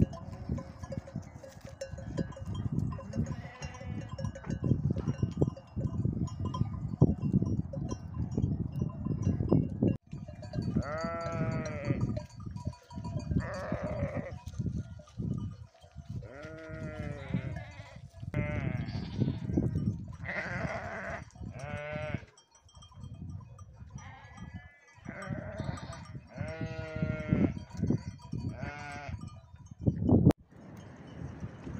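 Sheep bleating, many quavering calls one after another from about ten seconds in. Before that, a dense low rumbling noise.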